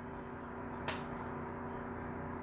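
Steady low electrical hum with a single light click about a second in.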